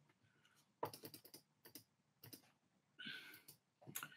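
Faint computer keyboard typing and clicking: a run of quick keystrokes about a second in, a few scattered ones after, and another short cluster near the end.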